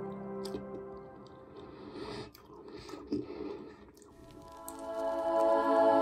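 Soft ambient background music fades out about a second in and swells back near the end. In the quiet gap between, close-up wet chewing and squishing of a chocolate-covered strawberry is heard.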